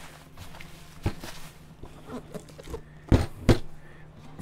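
Bubble wrap and plastic packaging crinkling and rustling as they are pulled off a parcel by hand. There is a sharp snap about a second in and two louder snaps near the end, a third of a second apart, over a low steady hum.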